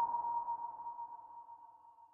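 Tail of an intro logo sound effect: a single struck, bell-like ringing tone that fades away steadily and dies out near the end.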